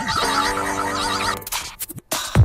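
Music for a radio segment's opening jingle, with a repeating pattern of warbling, wavering tones over held notes and short downward-sliding notes. About one and a half seconds in it breaks into a few sharp clicks and bursts of noise.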